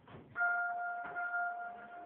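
Elevator chime: a single bell-like tone rings out about a third of a second in and slowly fades, with a few knocks of handling noise around it.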